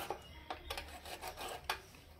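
Hands rubbing and handling a whole scored fish on a stainless steel plate, making a handful of short scraping strokes.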